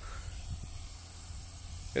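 Steady high-pitched insect chorus from the summer field vegetation, over a low rumble on the microphone.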